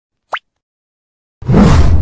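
Intro-animation sound effects: a short, quickly rising 'plop' blip about a third of a second in, then a loud, noisy half-second burst with a deep low end starting about one and a half seconds in.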